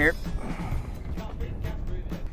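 Wind rumbling on the microphone, with choppy water around an open boat, as a steady noise with no clear single event.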